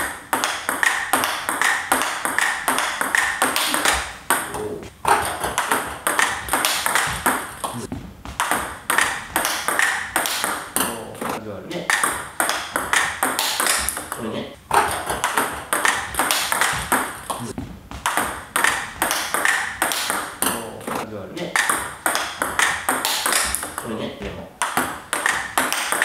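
Table tennis rally: a plastic ball pocking quickly back and forth off the bats and the table, one bat faced with Hallmark Illusion SP short-pips rubber. The clicks run steadily, with brief breaks every few seconds as points end and restart.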